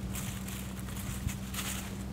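A steady low hum with a faint hiss, and a single faint tick about halfway through.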